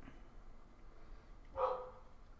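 A single short dog bark about a second and a half in, after a moment of low room tone.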